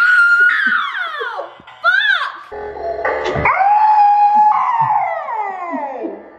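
A young woman screaming as she is jolted by an electric shock game: a long shriek falling in pitch, a short cry, then a second long shriek that holds and falls away.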